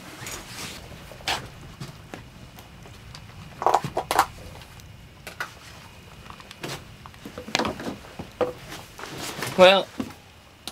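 Scattered clicks and knocks of fishing gear being handled on a wooden deck, a few louder ones about four seconds in, and a short voice sound near the end.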